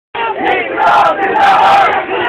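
A crowd of protest marchers shouting together, many voices at once, starting a moment in. It sounds thin and boxy, recorded on a mobile phone with nothing above the upper mids.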